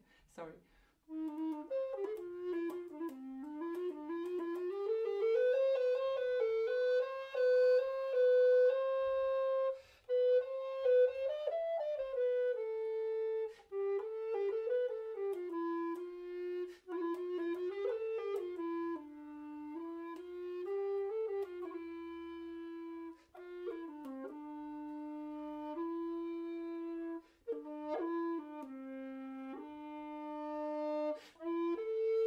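Mollenhauer Helder tenor recorder played solo: a slow, freely phrased passage of single notes that slide and bend in pitch, swelling louder and softer, with a few brief breaks for breath. It is played with the lip-control technique, where the player's lips partly close the wind channel.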